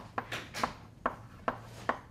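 Chalk writing on a blackboard: a string of sharp taps, about two a second, with short scratchy strokes between them as symbols are chalked out.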